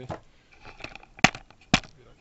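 Handling noise from a small engine's parts on a workbench: light rustling, then two sharp knocks about half a second apart as the paper gasket and aluminium crankcase cover are handled.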